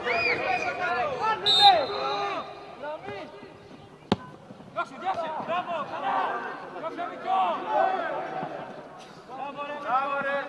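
Men's voices shouting and calling across an outdoor football pitch during play, with one sharp knock about four seconds in.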